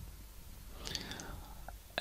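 A pause in a man's talk: faint room tone with a soft breath-like hiss at the microphone about a second in and a small click near the end.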